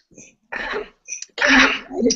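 A woman sneezes once, loudly, in the second half, after a short hesitant "um".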